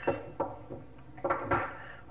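A few light clunks of a small metal wrench being set down and hand tools handled on a workbench, the loudest pair a little after a second in.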